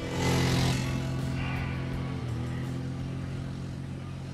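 Quad bike (ATV) engine running as it drives on a sand dune: a steady engine note, loudest in the first second, then slowly getting quieter.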